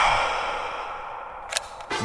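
A man's long, deep exhale through the mouth, loudest at the start and fading over about a second and a half, followed by a short click near the end.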